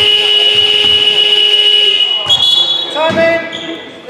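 Sports-hall scoreboard buzzer sounding one long, steady, high-pitched tone for about two seconds. Voices call out near the end.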